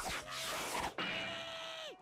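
Faint audio from the anime episode: twice, a held tone that then drops in pitch, under a light hiss.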